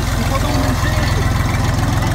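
Jinma JMT3244HXC tractor's three-cylinder diesel engine idling steadily with an even, rapid low throb.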